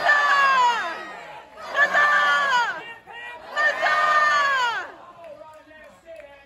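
A crowd of many voices gives three cheers, shouting together. One shout ends just after the start, and two more follow about two seconds apart, each dropping in pitch, before the voices fade to a low murmur.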